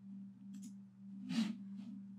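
A steady low hum, with a short burst of hiss about one and a half seconds in.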